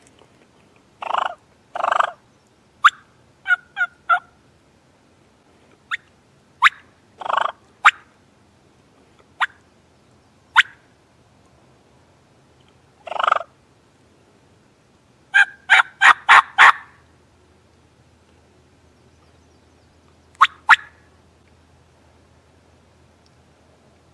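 Turkey calls: single sharp clucks and short runs of yelps, in quick series of three and five notes, with a few longer, fuller calls between them. The calls come in spells with pauses between.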